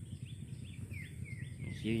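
Outdoor rural ambience: a steady run of short high chirps, about two or three a second, over a low rumble, with a few falling chirps in the second half.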